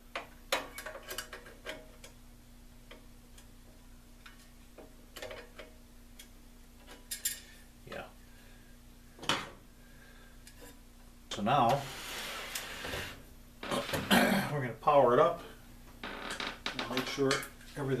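Scattered light metallic clicks and clinks of screws and a metal fan panel being handled and fitted to a radio chassis, with a longer rustling clatter about two-thirds of the way through.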